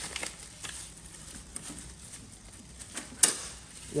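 Plastic sausage pouch and disposable plastic gloves crinkling and rustling as the package is handled on a stainless steel chamber floor, with scattered light ticks and one sharp tap a little after three seconds in.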